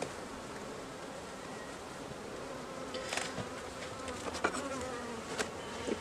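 Honeybees buzzing steadily around an open hive, with a few faint clicks about halfway through and near the end as the upper box, stuck down with propolis, is worked loose.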